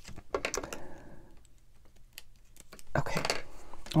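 Light clicks and taps of a paper craft piece and scissors being handled on a cutting mat: a quick run of them about a second in, then a denser cluster of clicking and rustling near the end.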